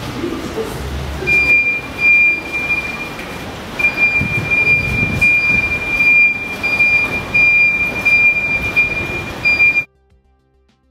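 A high-pitched electronic alarm tone, sounding in long stretches with short breaks from about a second in, over footsteps and rustling; it all cuts off suddenly just before the end.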